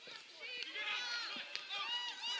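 Footballers shouting and calling to one another across the pitch, several raised voices overlapping at a distance.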